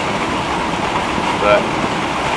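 A steady rushing noise, even and unbroken, with one short spoken word about one and a half seconds in.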